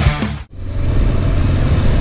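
Rock music cuts off about half a second in, and a motorcycle engine then runs steadily, heard from the rider's seat.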